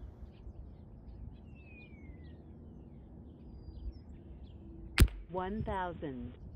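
A single shot from a Diana Stormrider Gen 2 .177 PCP air rifle fitted with its moderator, fired on a full 2900 psi fill: one short, sharp report about five seconds in, after a quiet stretch.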